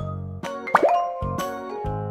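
A cartoon 'plop' sound effect, a short blip that sweeps quickly up in pitch about three quarters of a second in, over cheerful children's background music.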